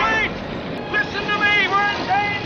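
Car horns blaring at several pitches over passing traffic, with a man shouting among them. The horn tones are held for about half a second a second in.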